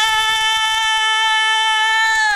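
A woman's voice holding one long, steady sung note at full voice, as if singing along with a car radio.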